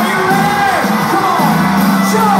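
Live rock concert heard from within the audience in a hall. A held low chord sounds steadily under crowd whoops and yells that rise and fall in pitch.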